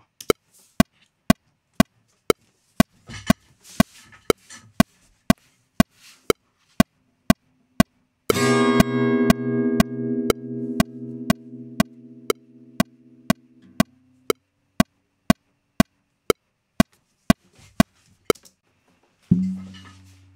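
A click track ticking steadily about twice a second. About eight seconds in, a single chord is strummed on an acoustic guitar and rings out, fading over about six seconds.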